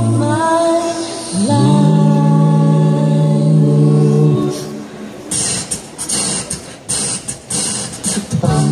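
Mixed-voice a cappella group singing close harmony into microphones: sustained chords over a deep bass line, the whole chord sliding upward about a second and a half in and held. Near the end the chord fades and a rhythm of short, crisp percussive hits takes over.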